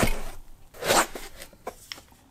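A microphone being pulled out of a white foam packing insert: two rasping rubs of foam, the second about a second in, followed by a few light clicks of handling.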